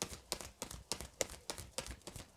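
Tarot cards being shuffled by hand: a quick, even run of faint, crisp card taps, about five or six a second.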